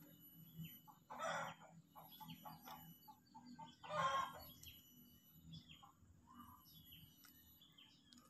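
Faint bird calls, fowl-like clucking: two louder calls about a second in and about four seconds in, with small chirps and light clicks between.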